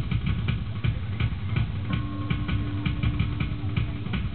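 Live drum kit playing a fast, even beat, with a held note from another instrument joining about halfway through.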